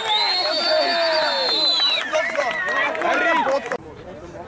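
Spectators shouting and cheering at a rugby try being scored, several voices at once, with one long high-pitched cry held for about two seconds. The noise cuts off abruptly just before the end.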